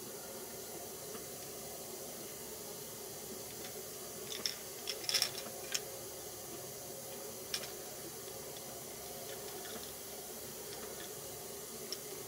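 Steady low background hiss with a few faint ticks and clicks, clustered around the middle and once more a little later, while a brush works thick epoxy over a crankbait held in pliers.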